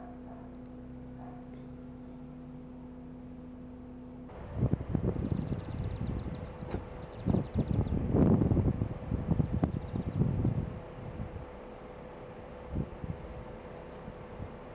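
Wind buffeting an outdoor microphone in irregular gusts of low rumbling, from about four seconds in until about ten seconds, over a quiet steady hum.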